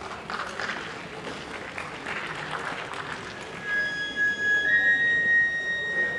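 Audience applause for the first few seconds, then a Japanese bamboo transverse flute (kagura fue) begins, playing long held high notes that step up in pitch.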